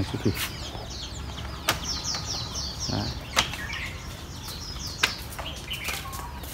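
Birdsong: short quick runs of high, falling notes, the clearest about two seconds in, with a few sharp clicks in between.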